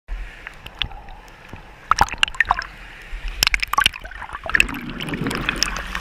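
Stream water sloshing and gurgling around the camera, with many sharp clicks and knocks. In the last second and a half a denser, lower churning as the camera is in bubbling white water.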